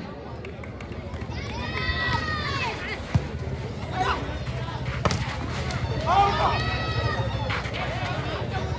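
A volleyball rally: the ball struck sharply about three, four and five seconds in, with loud shouted voices before and after the hits over a steady background din.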